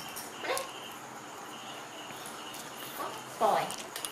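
Baby macaque crying in short, high-pitched calls: a brief one about half a second in and a louder, longer one that falls in pitch near the end.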